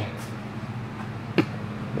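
A steady low hum with a single sharp click about one and a half seconds in.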